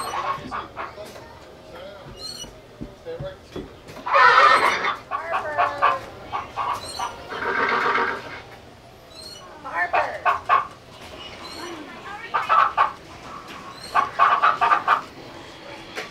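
Hens clucking in a series of separate calls, the loudest about four seconds in and again near the middle, from the sound effects of a stable display with hen figures.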